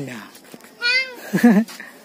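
A single short, high-pitched wavering cry about a second in, rising and then falling in pitch, followed by a brief bit of a child's voice.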